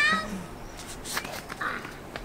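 A young child's short, high-pitched wavering squeal right at the start, dying away within a moment, followed by a few faint scuffs of small feet on the dirt and stone trail.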